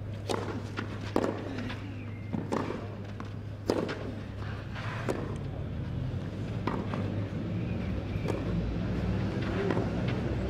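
Tennis ball struck back and forth by rackets in a rally on a clay court, one sharp hit every second and a half or so, over a steady low hum.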